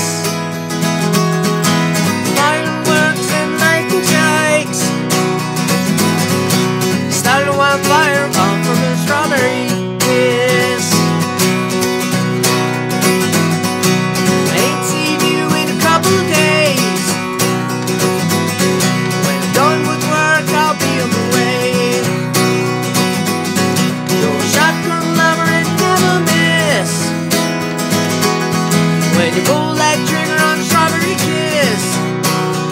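Acoustic guitar strummed steadily in a country style, with a man singing over it.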